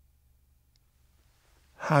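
Near silence: a pause in a man's speech with only a faint low hum of room tone, his voice resuming near the end.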